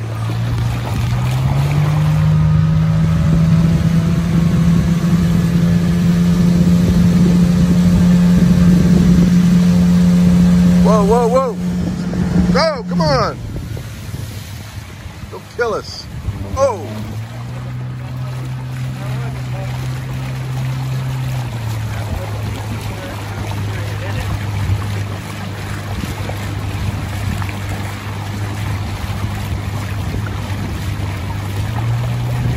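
Small boat's motor running under way, with a steady drone. It steps up in speed a second or two in, eases back about halfway through, rises briefly once more and settles to a lower speed near the end. A few brief wavering sounds come over it around the middle.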